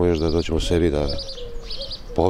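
Birds chirping in quick, high groups of three notes behind a man speaking Serbian. A long, low cooing note, falling slightly, runs through the second half.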